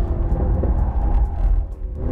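The 2018 Mercedes-AMG GT R's twin-turbo 4.0-litre V8 heard from the cabin, running off the throttle as the car brakes hard into a corner, dipping briefly near the end.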